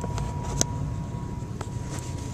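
Steady low hum of room noise, with a sharp click about half a second in and a fainter click near the end, as a sneaker is handled close to the microphone.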